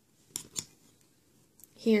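Two light metallic clicks about a quarter second apart, as round metal nail-stamping plates are handled and touch against one another on a stack.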